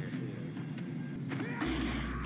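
Film soundtrack of a tiger-attack scene: low rumbling with some music, and a deep steady rumble that sets in about three-quarters of the way through.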